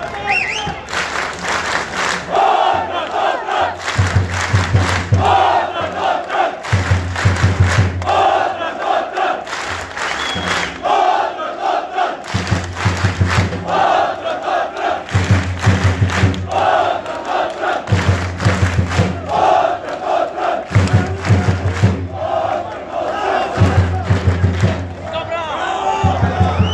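Football supporters chanting together in short phrases that repeat every few seconds, with fast, rhythmic low beats, like a drum, pounding between the lines.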